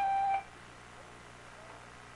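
A brief steady pitched tone lasting under half a second at the start, then a quiet room.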